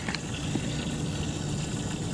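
Steady low rumble of background noise, with one faint click just after the start.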